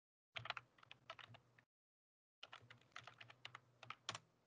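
Computer keyboard typing: two short bursts of key clicks, each cut in and out abruptly by a video call's microphone, with dead silence between them.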